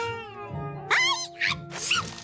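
Cartoon sound effects over background music: a falling whistle-like glide at the start, then short high-pitched rising cries from an animated living piñata, about a second in and again near the end.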